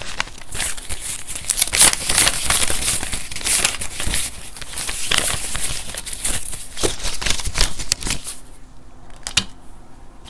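US paper banknotes being handled: a dense crinkling rustle as stacks of bills are shuffled, fanned out and flicked by hand. The rustle thins to a few sharp crackles near the end.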